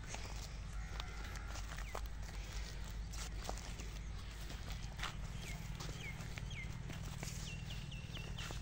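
Footsteps on dry crop stubble, short irregular crunches and clicks, over a steady low rumble. Bird chirps, short and falling in pitch, come in a few times past the middle and then as a quick run of them near the end.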